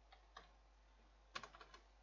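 Computer keyboard keys being typed: two faint keystrokes in the first half second, then a quick run of about five keystrokes a little over a second in.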